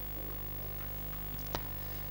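Steady low electrical mains hum with faint hiss during a pause in speech, with one faint click about one and a half seconds in.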